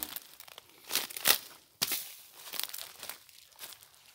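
Footsteps and brushing through dry leaf litter and undergrowth, an irregular rustling and crackling with the loudest crunch about a second in.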